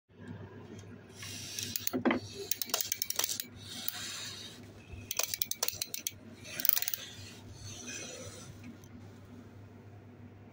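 Small plastic toy popcorn cart being handled, its loose plastic popcorn pieces rattling inside the clear case in several short bursts of clicks and clatter, with a single knock about two seconds in.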